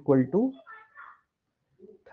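A man's voice speaks briefly, its last syllable drawn out and rising in pitch. Then comes a faint, short, higher-pitched sound and a pause.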